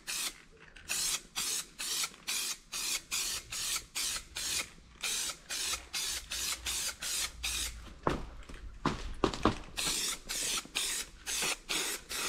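Aerosol spray-paint can hissing in many short bursts, about two a second, as light coats of paint go onto plastic quad body panels.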